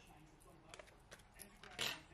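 Faint handling of a paper sticker and its backing: a few soft ticks, then a brief rustle near the end as the peeled sticker is lifted free.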